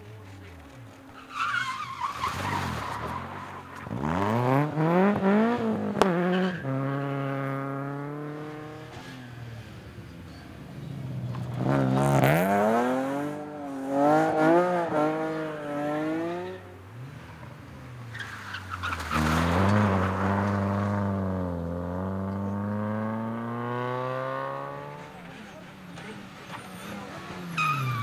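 Rally cars passing one after another, about three in turn, each engine revving hard with its pitch rising through the gears and then falling away as it lifts off and goes by.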